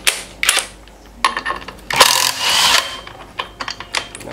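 Cordless impact driver hammering in short bursts on the centre nut of a washing-machine direct-drive motor's rotor. The longest and loudest burst comes about two seconds in, with sharp metal clicks before it and a run of clicks near the end.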